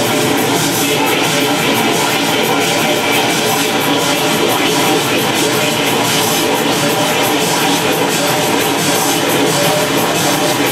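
Loud experimental noise music played live: a dense, noisy wall of sound spread from low to very high pitches with faint held tones inside it, steady in loudness and without pauses.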